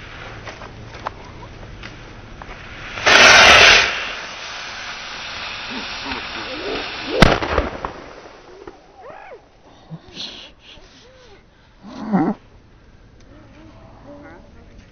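New Year's rockets strapped to a small wooden cart fire with a loud rushing burst about three seconds in, hiss as they burn, then go off with a sharp bang about seven seconds in. A few faint crackles come before the ignition.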